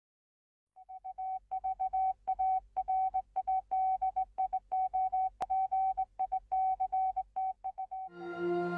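Morse code: a single high beep keyed on and off in a run of short and long pulses, starting about a second in. There is one sharp click midway.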